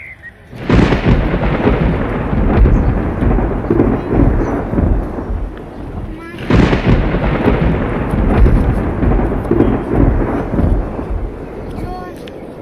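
Two thunderclaps, the first about a second in and the second about six and a half seconds in, each breaking suddenly and then rolling on in a long, low rumble that slowly fades.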